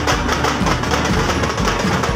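Folk procession drumming: a group of hand-held frame drums (tamate) beaten in a fast, driving tappanguchi rhythm, dense sharp strokes one after another.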